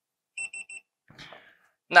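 Three quick, high-pitched beeps from the AI-9 fusion splicer's buzzer, signalling that the sleeve heater has finished heating the fiber's protection sleeve.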